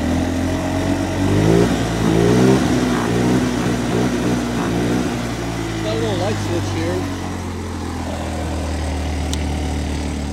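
A 150 cc go-kart engine running at idle. About a second in it is revved up in a couple of steps, its pitch rising, then it drops back to a steady idle.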